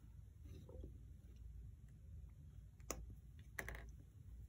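Near silence, room tone with a low hum, broken by a few faint clicks and taps near the end as small objects are handled on a cutting mat.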